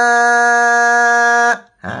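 A man reciting the Quran holds one long vowel at a steady pitch, cutting it off about one and a half seconds in, followed by a short spoken "ha" near the end. The held note is the lengthened vowel of a madd wajib muttasil, an alif followed by a hamza in the same word (tashā').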